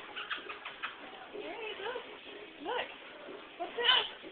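A baby's short cooing and squeaky babbling sounds that glide up and down in pitch, after a few clicks at the start, ending in a brief louder squeal.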